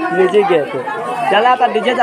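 Speech only: people talking, with voices overlapping in chatter.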